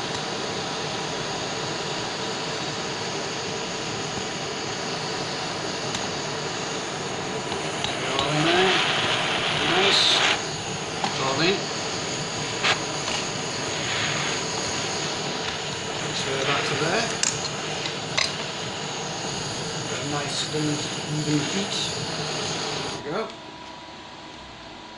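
Butane blowtorch flame hissing steadily on the crucible and then on the graphite ingot mould, with sharp clinks of metal tongs and the crucible being handled, mostly around the middle. The hiss cuts off about a second before the end as the torch is shut off.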